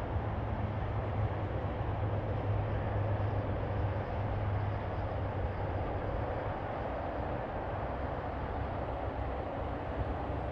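Steady low engine-like hum with a constant rumbling road or wind noise over it, unchanging throughout.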